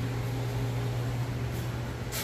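Steady low machine hum with a few level tones, unchanging.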